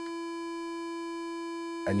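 Buchla Music Easel synthesizer holding one steady tone, a single unchanging pitch with overtones.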